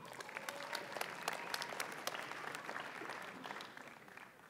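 Audience applauding with scattered individual claps, dying away near the end.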